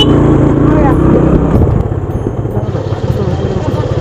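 A TVS single-cylinder motorcycle engine running as the bike rides slowly along a path. It is steady at first and eases off to a lower, quieter run a little before halfway.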